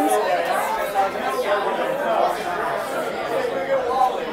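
Indistinct background chatter of many people talking at once.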